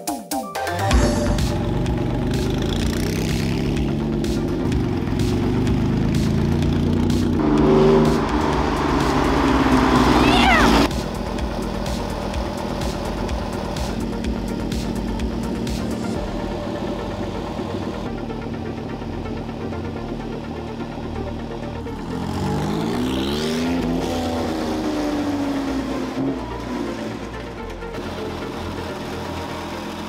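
Background electronic music over a Porsche 996's flat-six engine on a temporary exhaust, driving and revving up twice, about a third of the way in and again past the two-thirds mark.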